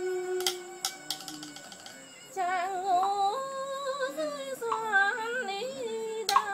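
A long held note dies away at the start, and a few soft clicks follow in a short lull. From about two seconds in, a woman sings a slow chèo lullaby melody with a heavy, wavering vibrato.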